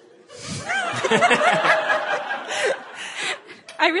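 Audience laughing, a burst of many voices that swells about half a second in and dies away near the end.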